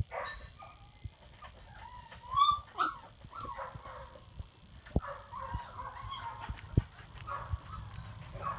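A litter of two-and-a-half-week-old puppies whining and squeaking, many short high cries that rise and fall in pitch, loudest about two and a half seconds in. A couple of sharp knocks fall in the second half.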